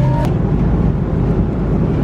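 Steady airliner cabin noise, the even rush and rumble of the jet heard from a passenger seat. A music cue cuts off about a quarter second in.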